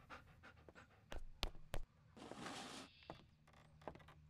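A dog panting, with a few soft thumps about a second in.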